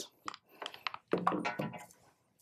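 Light clicks and taps of a large laptop-style power adapter and its cable being handled and set down on a stone countertop.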